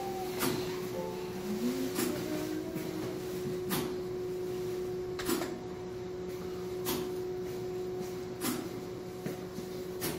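Arcade prize machine noise: a steady electronic hum with a sharp click about every one and a half seconds, and a short rising tone about two seconds in.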